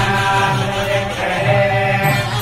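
Hindu temple priests chanting Vedic mantras in a steady, continuous stream of voices.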